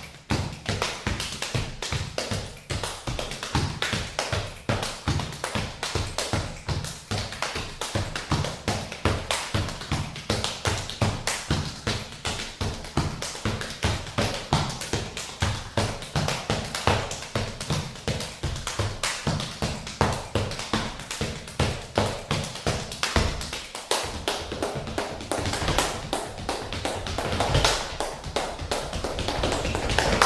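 Body percussion: a fast, continuous rhythm of hand slaps on the chest and body mixed with foot stomps and taps on wooden floorboards, getting louder near the end.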